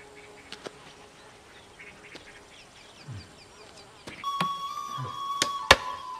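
Hand woodworking: sparse wooden knocks and taps, with small birds chirping in quick falling notes. About four seconds in a steady high tone sets in, and a few sharp knocks come near the end.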